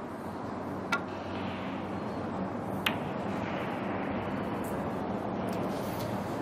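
Snooker safety shot: a sharp click of the cue tip striking the cue ball about a second in, then a second ball click about two seconds later as the cue ball makes contact up the table, over the steady hush of the arena.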